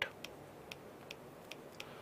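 Faint, unevenly spaced light ticks, a few a second, of a stylus tip tapping on a pen tablet while handwriting.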